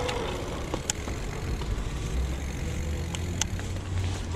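Mountain bike rolling along asphalt: a steady low rumble of wind on the camera microphone and tyre noise, with a couple of sharp clicks from the bike.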